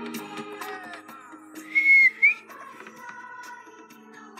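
Background music, cut through about two seconds in by a loud, short whistle: one held high note, then a quick upward note.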